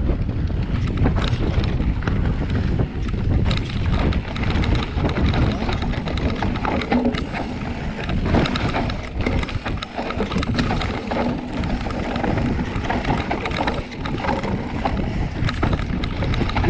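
Wind buffeting the camera microphone over the rumble and rattle of a mountain bike descending a rough dirt trail, with frequent short knocks as the bike goes over bumps.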